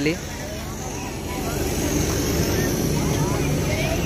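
John Deere combine harvester driving past with its diesel engine running; the rumble swells about a second in and holds steady.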